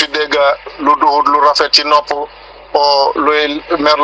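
Speech only: a voice talking steadily, with a brief pause a little past halfway.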